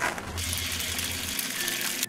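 An egg sizzling in a frying pan: a steady hiss that starts suddenly about half a second in and cuts off at the end.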